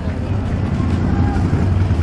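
A steady low rumble with faint voices of people in the background.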